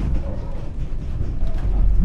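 Steady low rumble of a wooden corn windmill's running machinery as the mill is being braked to a stop with the brake (vang).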